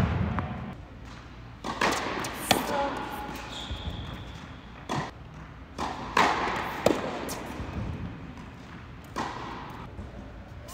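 Tennis rally: a ball struck by rackets and bouncing on a hard court, a string of sharp pops and thuds about a second apart, each echoing in a large indoor hall.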